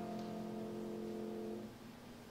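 Keyboard chord held steadily, then released about one and a half seconds in, leaving a faint low tone lingering.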